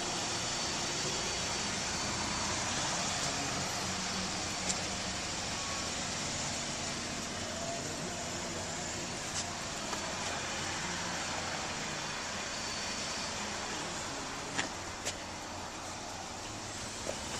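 Steady running noise inside the cabin of a Chevrolet Malibu, an even hum and hiss, with a few light clicks.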